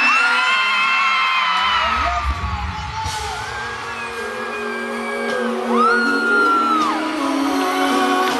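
Live band playing a song's intro, a held low note with bass coming in about one and a half seconds in, under long high-pitched screams from the crowd, one standing out near the end.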